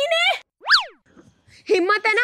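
Cartoon-style comedy sound effect: a quick whistle-like glide that shoots up in pitch and straight back down once, a little after half a second in. A girl's voice comes before it and speech follows it.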